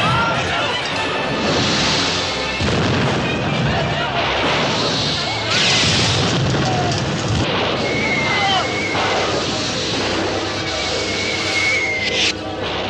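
Film battle soundtrack: repeated booms and hissing surges of pyrotechnics spraying sparks, the loudest about two seconds in, around six seconds and at the very end, over music and voices.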